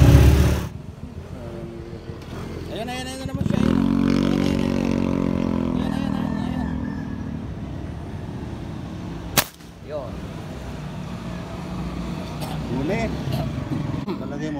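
A motor vehicle's engine passes, its hum coming in about three seconds in and fading over the next few seconds. A single sharp click sounds about halfway through.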